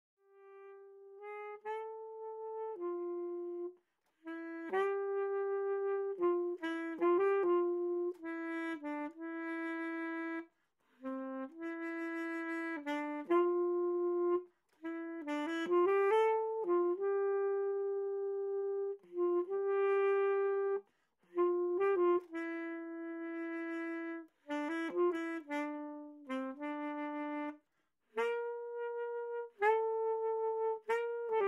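Solo melody on a single wind instrument, one note at a time, moving in short phrases with brief pauses between them.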